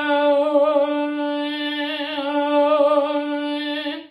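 A classical soprano's voice holding one long sung note at a steady pitch with a slight vibrato. Its tone colour shifts, turning brighter and more metallic about halfway through and again near the end. This is a demonstration of squillo, the twang made by narrowing the space at the epiglottis, being added to and taken from the round, open sound.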